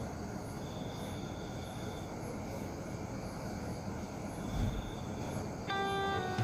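Steady low background rumble with faint high chirping repeating about twice a second. Plucked guitar music starts just before the end.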